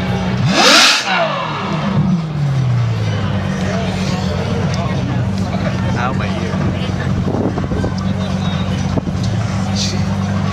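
Supercar engine idling, revved hard once about half a second in: the pitch sweeps up and then falls back to idle over the next two seconds or so, before settling into a steady idle.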